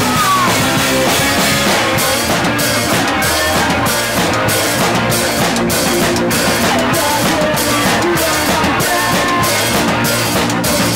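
Live punk rock band playing loud and steady: electric guitars, bass and a drum kit with repeated cymbal strikes, heard close to the drums.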